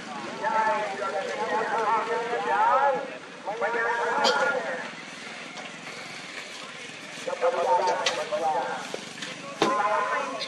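People's voices calling out and talking at a rocket launch site, in three bursts, with a single sharp crack near the end.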